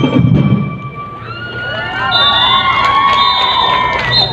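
A drum and lyre band's drumming stops about a second in. Then many voices rise together into one long held shout.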